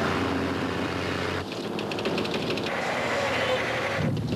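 Heavy-vehicle noise: the engine and rumble of a truck hauling an oversize load, a dense, steady din that starts suddenly, with a rapid clatter for about a second in the middle.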